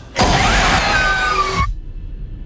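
A sudden, loud horror-trailer sting: a harsh burst of noise with wavering, gliding high tones. It lasts about a second and a half and cuts off abruptly, leaving a faint low rumble.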